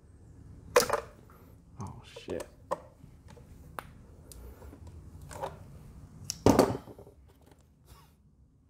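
Scattered handling noises in an engine bay: sharp clicks, taps and rubs as the yellow-handled engine oil dipstick is drawn out and handled. The loudest come about a second in and again near the end.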